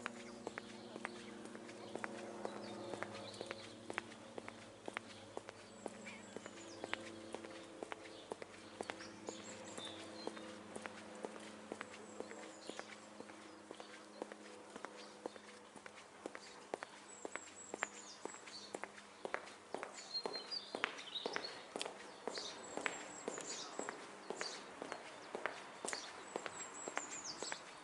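Footsteps on a brick-paved path at a steady walking pace, with birds giving short, high, falling chirps several times.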